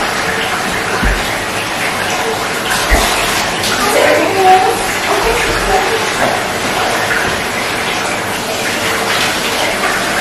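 Water running steadily into a bathtub from the tap, an even rush of water throughout.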